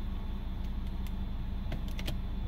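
Idling engine of a 2007 VW Jetta heard from inside the cabin, a steady low hum. A few light clicks from the automatic gear selector sound as it is moved through its positions, most of them near the end.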